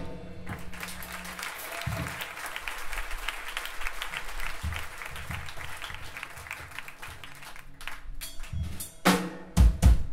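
Drum kit played loosely between songs: scattered drum and cymbal hits with some low held bass notes, after the full band stops abruptly at the start. A few louder drum hits come near the end.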